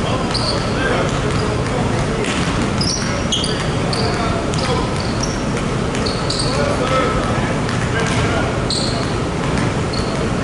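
Several basketballs bouncing on a hardwood court at an irregular rhythm, with frequent short sneaker squeaks, in a large arena. Players' voices call out in the background.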